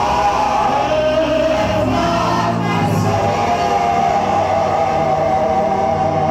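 Amplified gospel worship singing: a woman's lead voice with backing singers over held low keyboard notes that shift every second or two.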